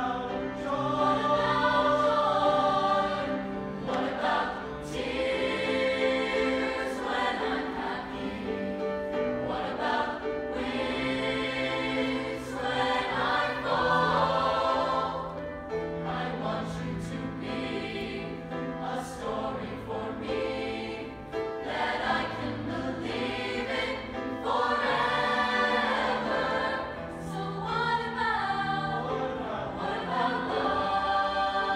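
Mixed choir of young men and women singing in harmony, in phrases that swell and fall back, over a sustained low bass line.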